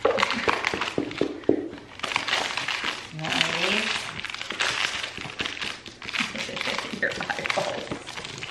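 Packaging crinkling and rustling as a treat from a dog advent calendar is handed to a pug, with a few short sharp rustles in the first two seconds.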